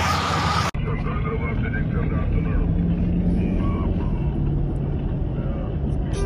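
Noisy street sound cuts off abruptly just under a second in, giving way to the steady low rumble of a car driving, heard from inside the cabin, with faint voices.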